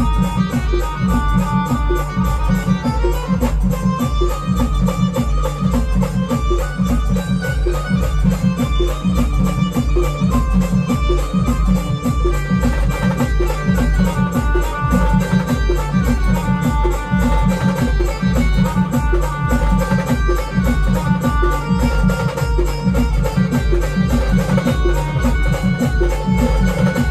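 Live band music: an electronic keyboard plays a sustained melody over a steady, driving drum beat.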